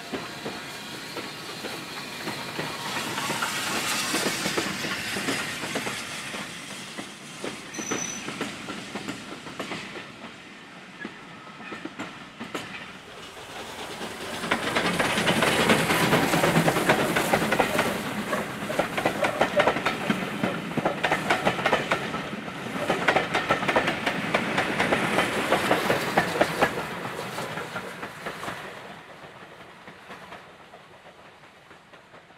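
Lancashire & Yorkshire Railway 0-6-0 saddle tank steam locomotive 51456 hauling a train of coaches past at close range, with steam hiss, exhaust beats and the rapid clickety-clack of wheels over the rail joints. The sound swells, dips briefly, then comes back louder through the second half and dies away near the end as the train pulls away.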